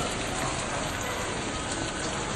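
Steady hiss of room tone picked up by a camcorder's built-in microphone, with no distinct events.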